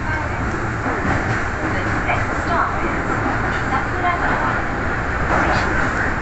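Subway train running out of a station into the tunnel: a steady low rumble of wheels on rail and traction motors, heard from the front of the car.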